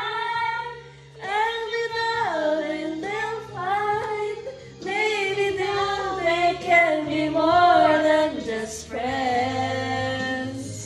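Female voice singing a pop melody in sustained, gliding phrases over a backing track, with short pauses about a second in and near the middle.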